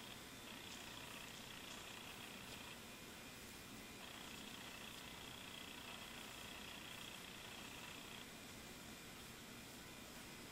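Near silence: faint steady hiss of room tone, with a high thin whine that cuts in and out twice.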